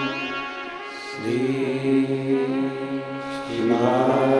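A man's voice chanting a Hindu devotional mantra in long, held sung notes whose pitch slides between phrases. The chant breaks off and resumes about a second in and again near the end.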